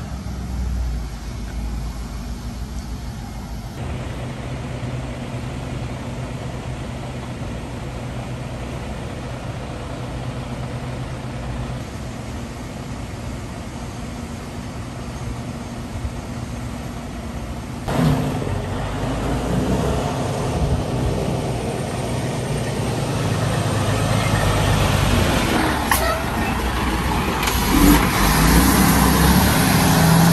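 Diesel tanker semi-trucks running with a steady low engine hum, which steps up suddenly about two-thirds of the way in and grows louder near the end as a truck comes close.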